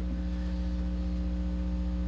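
Steady low electrical mains hum with a faint buzz, unchanging throughout.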